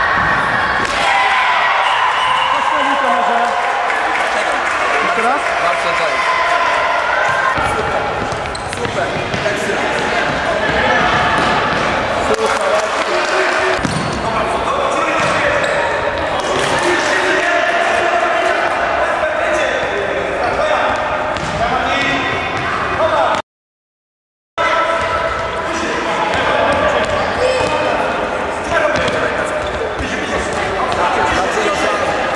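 Indoor futsal game in a reverberant sports hall: children's voices shouting and calling throughout, with the ball being kicked and bouncing on the hard court floor. The audio cuts out completely for about a second a little past two-thirds of the way through.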